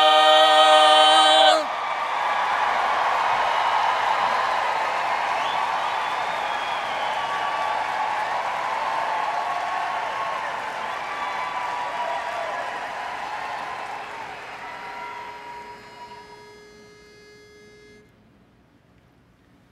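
The final held chord of a women's a cappella barbershop quartet cuts off about a second and a half in. Audience applause and cheering with whoops follow, fading away gradually. Near the end a pitch pipe sounds a single note, giving the starting pitch for the next song.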